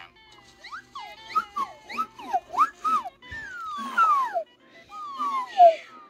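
Slide whistles playing a string of quick up-and-down glides, several overlapping, ending in a few longer downward slides.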